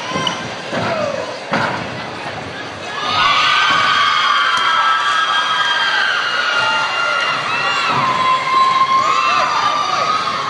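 Arena crowd cheering and shouting, swelling loud about three seconds in and staying up, with many high voices and whoops. A couple of thuds come before it.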